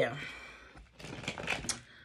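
Tarot cards being handled on a table: a quick run of light clicks and taps about a second in.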